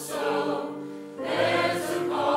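Mixed church choir of men and women singing a hymn under a conductor, holding a phrase that eases off and then starting a new phrase about a second in.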